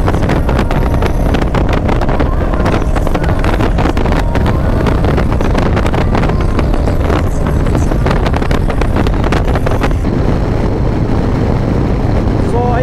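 Wind buffeting the microphone in steady gusts over the low, continuous rumble of a Harley-Davidson Low Rider ST's Milwaukee-Eight 117 V-twin cruising at freeway speed.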